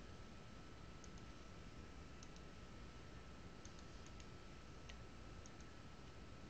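Faint computer mouse clicks, a dozen or so, several in quick pairs like double-clicks, over a steady low hiss.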